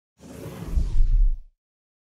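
Whoosh sound effect of a TV channel's logo sting: it starts bright, darkens as a deep rumble swells beneath it, and cuts off suddenly about a second and a half in.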